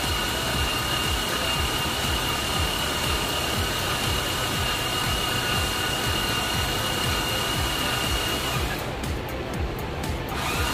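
Steady machine whirring with a high, even whine, which cuts out for about a second near the end and then resumes.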